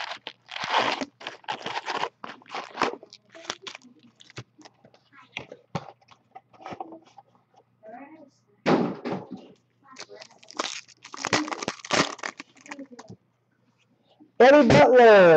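Foil trading-card pack wrappers and packs being handled and torn open, giving irregular crinkling and crackling rustles with short pauses between them.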